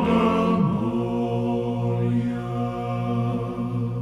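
Dalmatian klapa, a male vocal ensemble, singing a cappella in close harmony. The voices settle into one long held chord about half a second in and sustain it.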